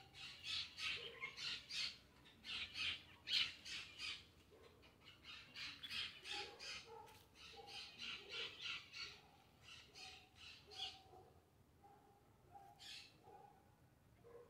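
A bird giving harsh, rapid squawking calls in runs of several at a time, stopping about eleven seconds in, with one last call near the end. Fainter short, lower notes sound underneath.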